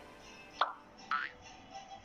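Two short edited-in sound effects, each a quick swoop falling in pitch, the first about half a second in and the second just after a second, over quiet background music.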